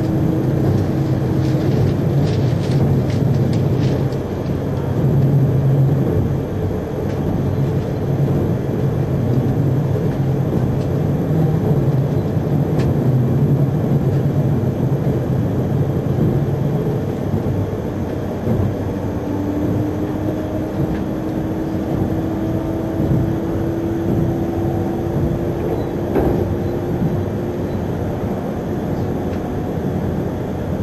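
Running noise heard from inside an E3-series Akita Shinkansen Komachi car: a steady rumble of the train rolling along the line. In the second half, a faint whine rises slowly in pitch.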